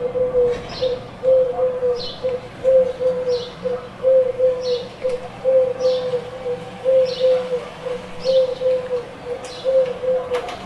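Pigeon cooing: repeated short low notes in groups of two or three, a group about every second and a half, with a brief higher chirp about once a second.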